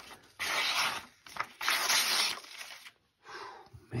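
The M390 clip-point blade of a slip-joint pocket knife slicing through a sheet of paper in three hissing cuts, the middle one longest. The cuts go through cleanly, a sign that the blade is sharp out of the box.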